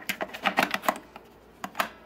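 Quick run of small plastic clicks and taps as two C-size NiMH cells are pressed down into neighbouring bays of a multi-cell battery charger, knocking against the plastic bays and sliding spring contacts. The clicks come thick through the first second, then a few single ones follow.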